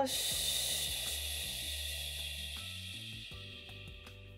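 A woman's long, slow exhale through the mouth, a breathy hiss that fades away over about three and a half seconds, over soft background music.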